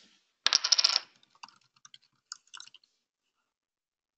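A quick clatter of many sharp clicks lasting about half a second, then a handful of lighter, scattered clicks.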